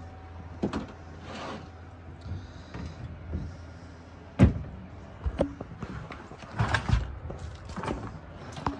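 Scattered knocks and clatter from a glass-fronted reptile enclosure being handled: glass doors and wooden branches bumped and shifted. The sharpest knock comes about four and a half seconds in and a small cluster follows near the end, over a low steady hum.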